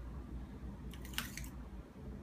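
Brief handling noise: a short cluster of light scrapes and clicks about a second in, over a faint low hum.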